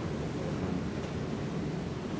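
Steady, even background hiss of room tone with no distinct events.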